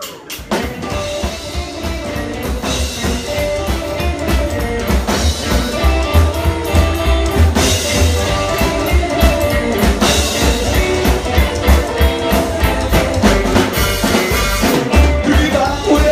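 A rockabilly band playing live: upright double bass, drum kit and electric guitar. The music kicks in right at the start and runs steadily loud.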